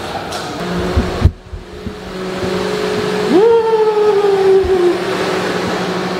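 Car engine in an echoing underground car park: a loud thump about a second in, then the engine revs up quickly and its pitch sinks slowly back down over a couple of seconds.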